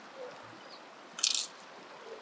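A brief plastic rattle from a fly box being handled, a little past a second in, over the steady hiss of running creek water.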